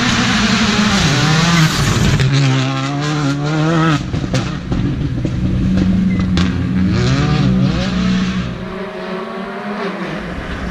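R5 rally car's turbocharged four-cylinder engine revving hard through the gears, the pitch climbing and then dropping at each shift, with a few sharp cracks from the exhaust around the middle.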